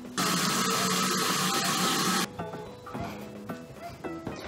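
Water running from a tap in a steady hiss for about two seconds, switching on and off abruptly, over background music.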